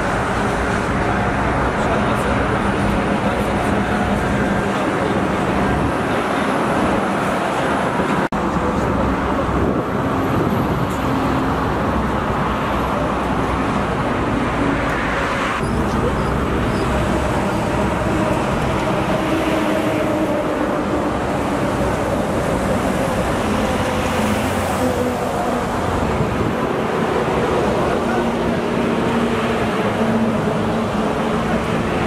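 Steady motorway traffic noise with vehicle engines running, a continuous hum with no sudden events.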